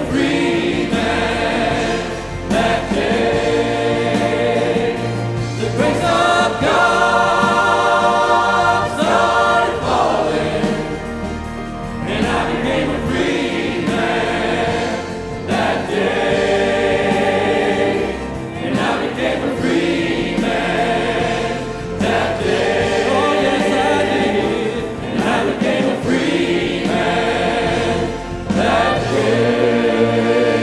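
Church choir and worship leaders singing a gospel worship song with keyboard accompaniment, the singing rising and easing in phrases a few seconds long.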